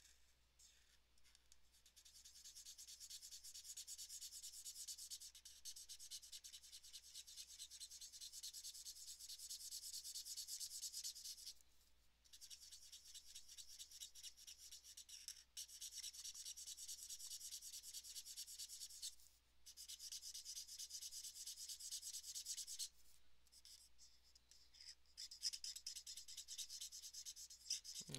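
Marker nib rubbing on paper as an area is coloured in with quick back-and-forth strokes: a faint, scratchy rubbing that starts about two seconds in and goes on in long stretches, broken by a few short pauses, and gets quieter near the end.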